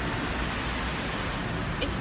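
Automatic car wash spraying water over the car, heard from inside the cabin as a steady rushing hiss with a low rumble underneath.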